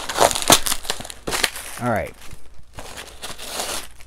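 A package box being torn open by hand, with packing material crinkling: a quick run of tearing and crackling for the first second and a half, then more rustling near the end.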